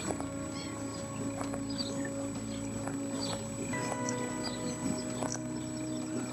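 Background music of held chords, the chord changing a little past halfway through.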